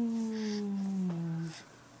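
A baby's long drawn-out vocal sound, one held note slowly falling in pitch, that stops about a second and a half in.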